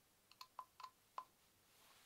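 Near silence, broken by five faint, short clicks spaced over about a second.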